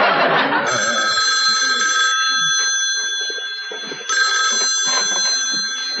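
Telephone bell ringing twice, each ring about a second and a half long with a pause between. Studio audience laughter dies away at the start.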